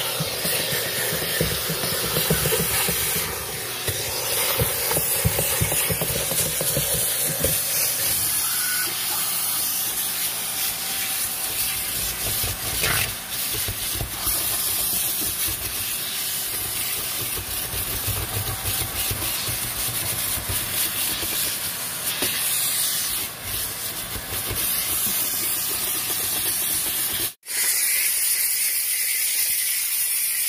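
McCulloch 1385 canister steam cleaner hissing steadily as steam jets from its wand onto the truck's upholstery and trim. The hiss breaks off briefly near the end and comes back as steam is blown over a leather seat cushion.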